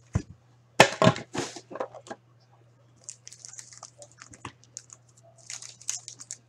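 An Upper Deck hockey card pack's wrapper being torn open, with a few loud crackles about a second in. After that come softer, quick rustling ticks as the stack of cards is handled and slid through.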